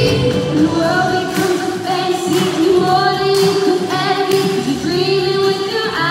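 Pop-style music with a female voice singing over a beat that hits about once a second.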